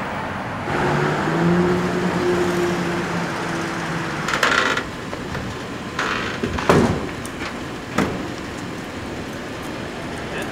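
City street traffic with police vehicles: an engine hums steadily for the first few seconds, a short hiss comes about four seconds in, and two sharp knocks follow near seven and eight seconds in.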